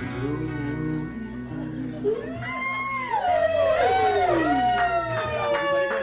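Live band music: a steady bass line, joined about two seconds in by a lead line that slides up and down in pitch and grows louder.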